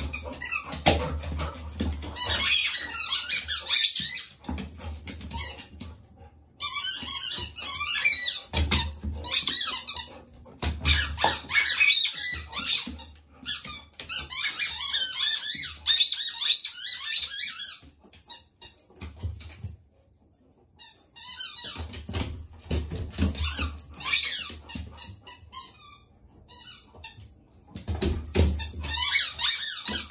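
A dog moving and nosing right up against the microphone: bursts of high wavering squeaks and clicks, with dull bumps as it brushes the device, quieter for a few seconds past the middle.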